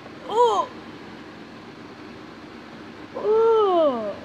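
A person's wordless vocal exclamations, reacting to something creepy: a short one about half a second in and a longer, drawn-out one near the end, each rising then falling in pitch.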